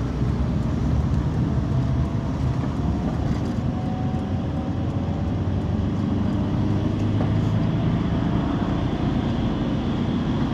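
Steady engine and road noise heard from inside a moving bus, with a faint whine that glides slowly in pitch now and then.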